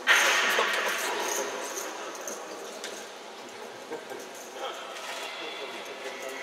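A crowd of children and adults in a hall breaks into a sudden burst of cheering and clapping that fades over about three seconds into chatter.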